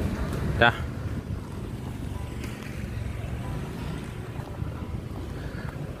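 Steady low rumble of passing street traffic, cars and motorcycles, mixed with wind buffeting the microphone. A brief, loud pitched sound cuts in about half a second in.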